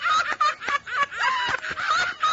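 Two men laughing loudly and heartily, in quick repeated ha-ha bursts.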